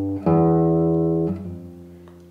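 Nylon-string classical guitar bass notes: one note is ringing, then a new note is plucked about a quarter second in. It rings on and fades away in the second half.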